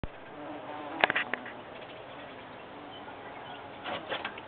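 A carpenter bee (wood bee) hovering and buzzing, with a few sharp clicks about a second in and again just before the end.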